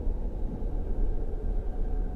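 A low, steady rumble from a TV drama's soundtrack, with no speech over it.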